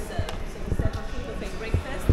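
Dull low thumps of footsteps on a tile floor, a cluster a little past halfway and another near the end, with indistinct voices in the background.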